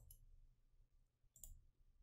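Near silence, broken by one faint computer-mouse click about one and a half seconds in as a chart is selected.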